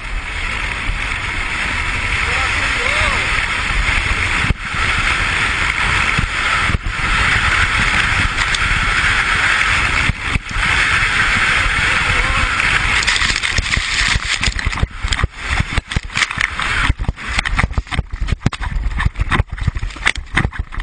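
Snow shovel sliding fast down a snow run: a steady rush of wind on the microphone and the blade scraping over the snow. About six seconds before the end it breaks up into rapid, irregular knocks and jolts as the shovel hits bumps and tumbles over.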